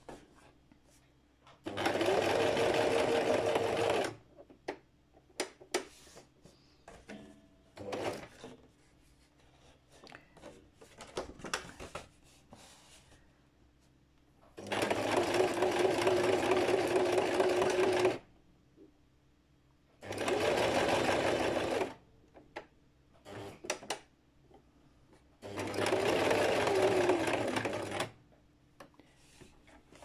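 Electric sewing machine stitching through paper envelopes in four short runs of two to four seconds, its motor speeding up at the start of each run and slowing at the end. Between the runs there is soft paper rustling and handling clicks.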